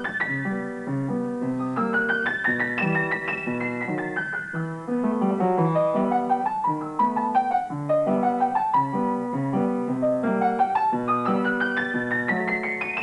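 Upright piano played with both hands: runs of notes sweep up and down the keyboard over a repeating bass line.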